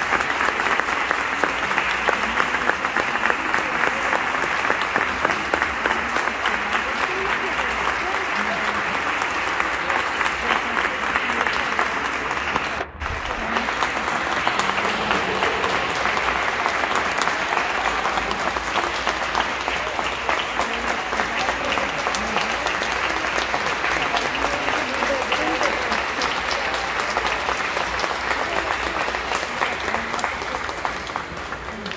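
Audience applauding steadily, with voices mixed into the clapping. The applause cuts out for an instant about thirteen seconds in.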